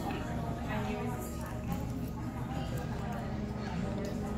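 Dining-room murmur of voices, with a few light clicks of forks against a glass dish.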